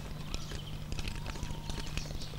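Wooden lace bobbins clacking against each other in quick, irregular clicks as the lace makers work, over a low steady hum.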